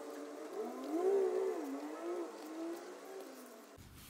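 A man humming a low, wavering 'mmm' for about two and a half seconds while he writes, with faint pen-on-paper ticks.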